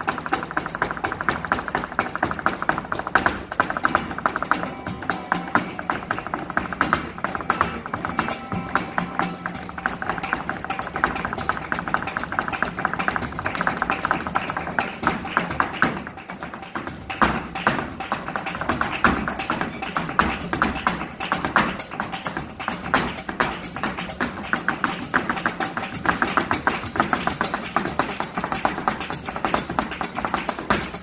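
Live flamenco: a dancer's fast heel-and-toe footwork (zapateado) striking the stage in rapid runs over acoustic flamenco guitar and hand clapping. The strikes ease briefly about halfway through.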